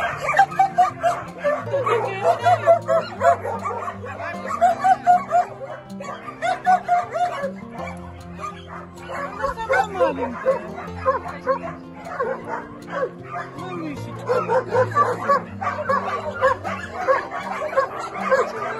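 Several puppies whining and yipping in many short, high cries, over background music with held low notes.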